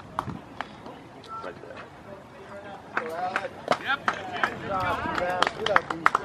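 Several voices calling out across a baseball field, getting louder and busier about halfway through, with scattered sharp clicks.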